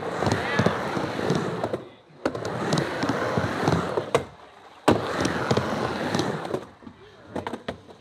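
Skateboard wheels rolling up and down a vert ramp in three long passes, each starting with a sharp clack of the board at the turn. The rolling dies away after about six and a half seconds, leaving a few light clicks.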